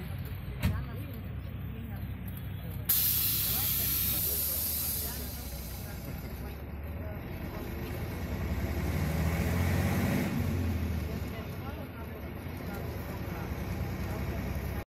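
City bus engine running inside the passenger cabin. About three seconds in, a sudden loud hiss of compressed air fades away over a couple of seconds, and the engine swells for a while later on.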